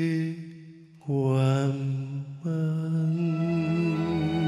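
A male singer holding long sung notes of a Taiwanese Hokkien ballad: three drawn-out phrases, the second sliding upward, the last one with vibrato.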